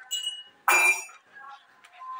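Beaded strand door curtain clinking as it is pushed aside: a few light clinks, then a louder jingling rattle about two-thirds of a second in.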